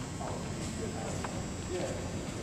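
Brief murmured talk in a group, with a few light knocks on a hardwood gym floor.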